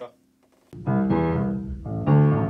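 Upright piano: after a moment's silence a chord is struck about a third of the way in and held, ringing on steadily.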